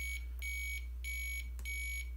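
Piezo buzzer beeping in an even series of short, high-pitched beeps, about one and a half a second, counting out the number of the key read from the analog keyboard (here the highest of several keys held down). A steady low hum runs underneath.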